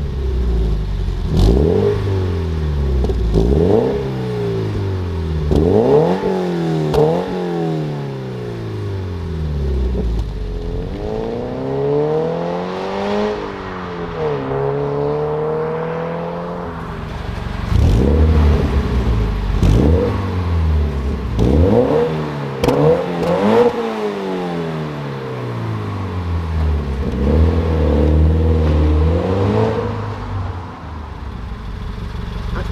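Toyota GT 86's 2.0-litre flat-four boxer engine breathing through a Milltek sport exhaust, revved in a series of quick blips that rise and fall sharply. In the middle comes a longer, drawn-out rise and fall in engine pitch, then more short revs over a steady low running note near the end.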